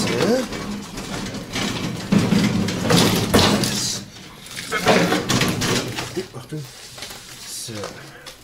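Metal rolling tool cart pushed over paving stones, its tools rattling in noisy stretches, with voices mixed in.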